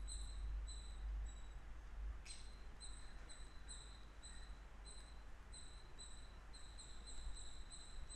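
Faint, broken high-pitched whine in short dashes, several a second, over a low hum and hiss, with a soft tap about two seconds in: the electronic noise of a stylus writing on a pen tablet.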